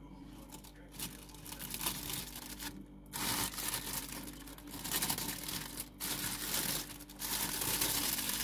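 Plastic roasting bag crinkling as it is cut open with scissors and pulled apart. The crinkling grows louder about three seconds in.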